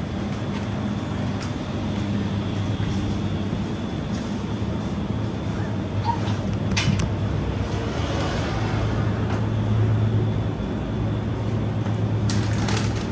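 Supermarket background noise: a steady low hum from the store's refrigerated display cases and ventilation, with a brief sharp click about seven seconds in.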